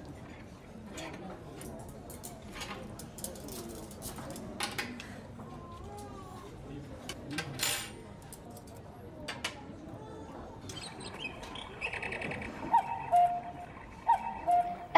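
Cutlery clinking now and then against a tabletop over quiet room sound; near the end a cuckoo clock calls loudly, higher 'cuck' notes dropping to lower 'oo' notes in the broken 'cuck-cuck-cuck, oo-oo-oo' pattern.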